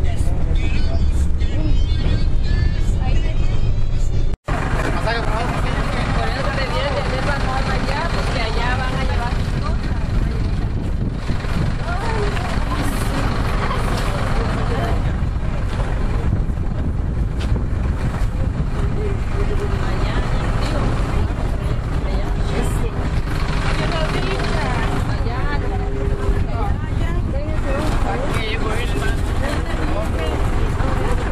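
Bus engine running, a heavy low rumble heard from inside the bus. The sound cuts off abruptly about four seconds in and picks up with the engine still rumbling under the chatter of many young people's voices.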